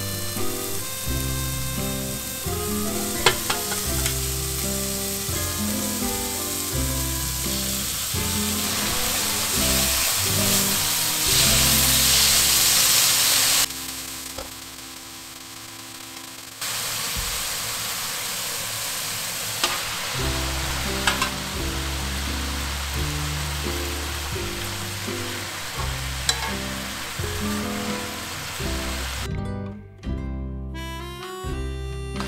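Shredded vegetables sizzling in a hot wok as they are stir-fried with chopsticks, with a few light clicks. The sizzle grows louder just before the middle, then drops out suddenly for about three seconds before it resumes.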